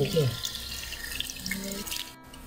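Potato slices sizzling and crackling as they fry in hot oil in a nonstick pan.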